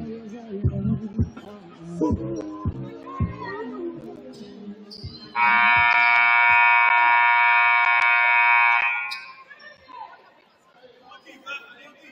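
Gym scoreboard horn signalling the end of the first half as the game clock runs out. It sounds loud and steady for about three and a half seconds, starting a little past five seconds in, over voices and background music.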